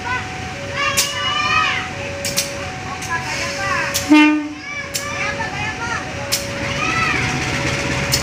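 A KAI CC 203 diesel locomotive gives one short horn toot about four seconds in, the loudest sound, over the low rumble of its engine. A steady signal of two alternating tones repeats throughout, and people call out.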